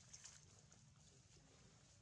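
Near silence: faint outdoor background hum with a brief soft crackle about a quarter second in.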